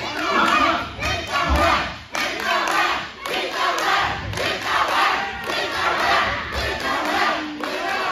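Wrestling crowd shouting and yelling, many voices overlapping at once.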